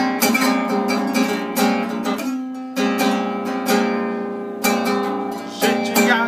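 Acoustic guitar strummed by hand, a run of ringing chords in a steady rhythm with a brief softer moment about halfway through: the instrumental introduction to a song.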